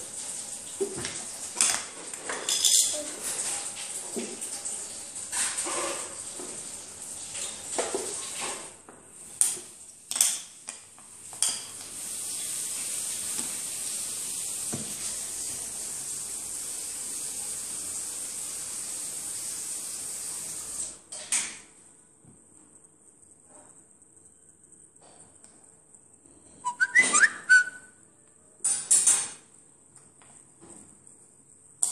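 Hard puzzle pieces clicking and tapping as they are set down and slid on a glass tabletop, in scattered bunches through the first dozen seconds and again near the end. A steady hiss runs for about nine seconds in the middle.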